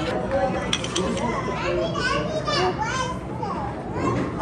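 Children's voices in a busy play room: several kids chattering and calling out over one another, with high, gliding calls.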